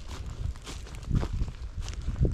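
Footsteps of a person walking over dry dead grass and soft soil, about two steps a second, over a low rumble.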